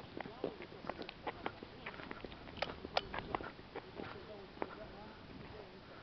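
Footsteps and hand-held camera handling noise: a string of irregular clicks and taps, busiest in the first four seconds, with faint voices in the background.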